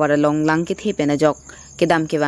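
Speech: a voice talking, with a thin steady high-pitched whine running underneath.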